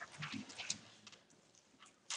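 Faint handling noise of papers and a pen on a desk: a few soft knocks and rustles with a light click in the first second, then quieter.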